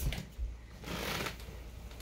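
Rustling in a guinea pig cage's paper-pellet bedding and hay, in a few short scuffles as the guinea pig is grabbed.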